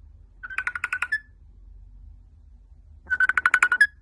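Rainbow lorikeet mimicking a telephone ring: two rapid trilling rings, one about half a second in and one near the end, each finishing on a short higher note.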